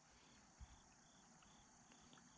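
Near silence, with faint insect chirping: short high chirps repeating evenly, about three a second.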